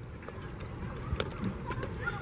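Water from an artificial rock fountain running down the boulders: a steady, low rushing noise with a few faint clicks.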